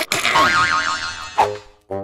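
Cartoon comedy score and sound effect: a sudden strike opens a dense, wobbling, springy musical effect that fades after about a second, followed by another short accent and a new note near the end.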